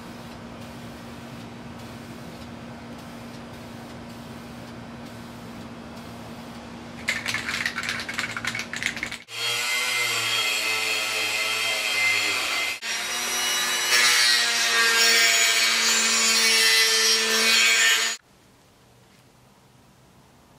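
Handheld rotary tool with a small wheel grinding against a cast-steel driveshaft yoke clamped in a vise, cleaning its working surfaces. Its whine wavers in pitch as it bears on the metal, breaks briefly about halfway through that stretch, and stops abruptly near the end. Before it, a couple of seconds of quick scrubbing strokes are heard over a steady hum.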